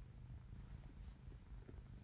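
Near silence: faint low room rumble from the recording setup.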